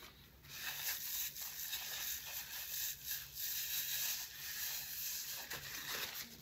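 Paper napkin being unfolded and crumpled close to a clip-on microphone: a dense crinkling rustle of paper that starts about half a second in and stops just before the end.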